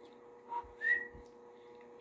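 A person whistling two short notes about half a second in: a lower note, then a higher one that rises slightly.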